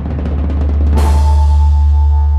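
A musical logo sting: a rapid drum roll swells louder and peaks about a second in on a loud strike, which rings on as a deep held note with steady higher ringing tones above it.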